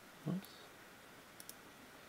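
Computer mouse button clicking, a quick pair of faint, sharp clicks about one and a half seconds in, as a popup menu is dismissed.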